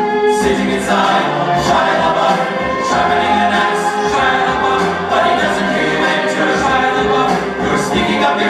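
Recorded song with singing voices and a bass line, played back over the sound system for a lip-sync performance.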